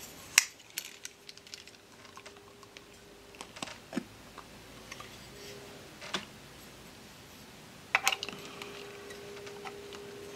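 Scattered small clicks and taps of hands working a Bolex B8 8mm cine camera: the side door is opened and a film reel is handled against the metal body and the reel posts inside. The clicks come in little clusters, most of them near the start and again around eight seconds in.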